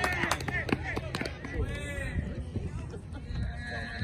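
Spectators at a baseball game shouting a drawn-out, wavering cheer, with a few sharp snaps in the first second over steady crowd and field noise.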